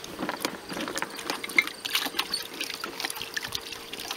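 Water sloshing and splashing in a plastic tub holding koi as it is carried along in a garden cart, in an irregular run of splashes and knocks.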